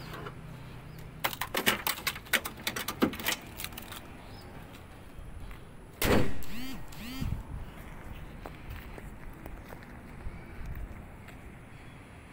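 Toyota Innova's bonnet being shut: a run of clicks and rattles in the first few seconds, then one loud slam as the bonnet closes about six seconds in.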